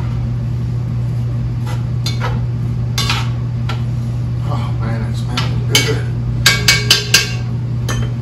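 A utensil stirring and knocking against a Dutch oven, with scattered clanks and then a quick run of four or five sharp taps, the loudest sounds, about two-thirds of the way through, over a steady low hum.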